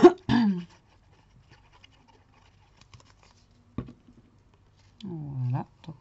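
A person coughing twice right at the start, then faint paper-handling ticks as a paper square is pressed onto a small card box, and a short bit of voice near the end.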